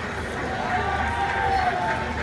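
A voice over a public-address system with a steady crowd and outdoor background noise.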